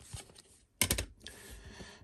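Hard plastic graded-card slabs being handled and set down, a quick cluster of sharp clicks about a second in, then a light rustle of handling.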